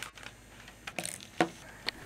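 A few faint light clicks and taps, roughly half a second apart from about a second in, from hands handling a small hobby motor and the wires of its battery-box circuit, over a low steady hum.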